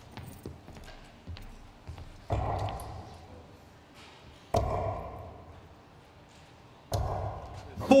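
Three steel-tip darts thudding into a bristle dartboard one by one, about two and a half seconds apart, each impact dying away in the hall.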